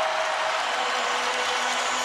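Basketball arena crowd cheering, a steady dense roar, with a faint held tone running through it.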